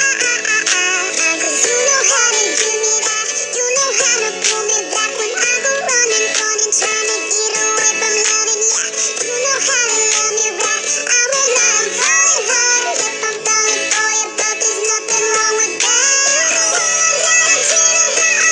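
A pop song sung in high, sped-up chipmunk-style voices over a backing track, playing throughout.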